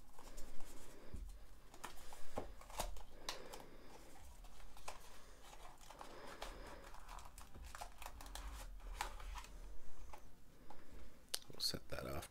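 A cardboard retail box and its plastic packaging being opened by hand: scattered rustling and crinkling with small clicks and taps.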